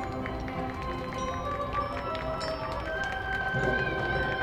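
High school marching band playing a soft passage: held notes with short struck notes over them. A high held note comes in about three seconds in.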